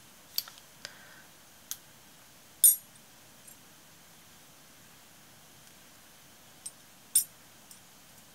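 Small metal craft pieces (cogs, filigree, clock parts) clicking and clinking as they are handled and laid against a painted glass bottle: about six short, sharp clicks, the loudest about two and a half seconds in and another near the end, with a quiet stretch in between.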